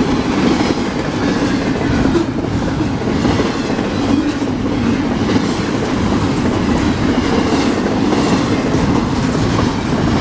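Double-stack intermodal freight cars rolling past close by: a steady, loud rumble of steel wheels on rail with clickety-clack over the rail joints.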